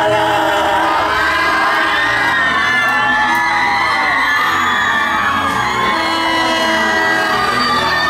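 A live band playing, with a crowd cheering and whooping over the music.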